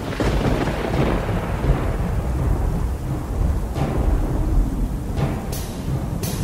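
Thunder rumbling over rain, a storm sound effect that breaks in suddenly at the start and rolls on steadily.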